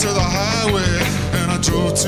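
A man singing a folk-rock song live into a microphone, holding wavering sung notes over steady guitar accompaniment.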